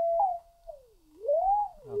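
Computer-generated sine-wave tone from a p5.js oscillator, its pitch and loudness steered by the mouse: it holds a steady note briefly, fades nearly away as it slides down, then swells back while gliding up and falls again near the end.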